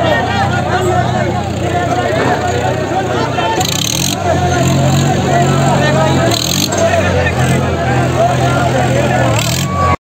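Tractor engine running at steady revs, growing louder from about four seconds in, with many people talking and shouting over it.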